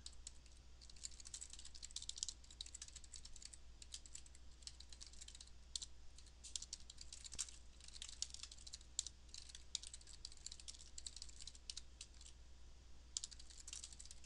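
Computer keyboard typing: quick, irregular key clicks with short pauses, faint under a steady low hum.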